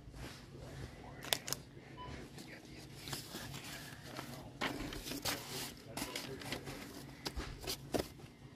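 Loose paper sheets handled on a shelf, rustling in irregular bursts, with two sharp clicks about a second and a half in, over a steady low hum.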